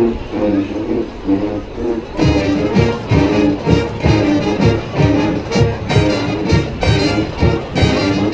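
High school marching band playing live in a stadium: sustained wind chords, with a steady low drum beat coming in about two seconds in.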